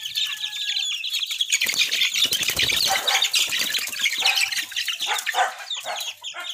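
A cage of month-old gamefowl chicks peeping rapidly and continuously, with wings flapping and scuffling from about a second and a half in as one chick is grabbed by hand.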